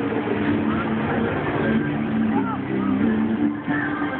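Choir singing heard from a distance, sustained low notes that hold and change pitch in steps, under a murmur of people's voices.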